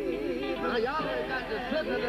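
Several male gospel-quartet voices singing and calling out over one another, with wavering, shifting pitches.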